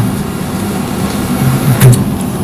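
Steady room hum of ventilation in a meeting room during a pause in speech. A short voiced hesitation sound and a sharp click come near the end.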